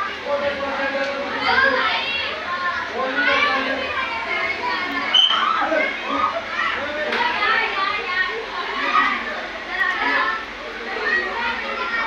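Many children's voices chattering and calling out over one another, a continuous babble with no single clear speaker.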